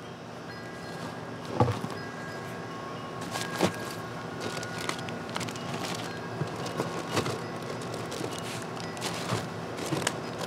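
Gear being handled in a bass boat's open storage compartment, with a few sharp clunks and taps, the loudest about a second and a half in and again near four seconds. Faint held tones sit steadily underneath.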